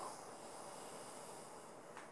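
Faint breathing: a soft, hissy exhale that fades out near the end.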